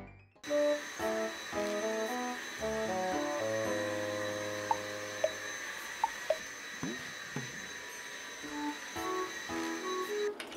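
A cordless stick vacuum cleaner running on carpet with a steady high-pitched whine, starting about half a second in, under background music.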